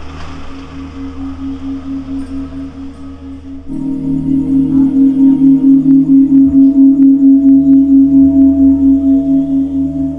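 Ambient drone music: a steady low tone pulsing about three times a second, with a deeper hum beneath. It turns suddenly much louder nearly four seconds in.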